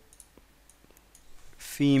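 A few faint clicks of computer keys as a file name is typed, with the spoken word "female" near the end.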